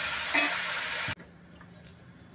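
Cabbage and potato sizzling in hot oil in an aluminium kadhai while a metal spatula stirs and scrapes the pan. The sizzling cuts off abruptly about a second in, leaving only faint clicks.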